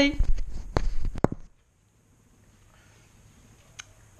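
Handling noise while a guinea pig is held and shifted up close to the microphone: low rumbling bumps and a few sharp clicks for about a second and a half. The sound then drops out to a faint room hum, with one small click near the end.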